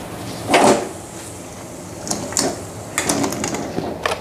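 Peeled potato chunks slide off a plate and drop into a pot of boiling water, over the steady bubbling of the boil. There is one loud plop about half a second in, and more splashes and knocks around two and three seconds in.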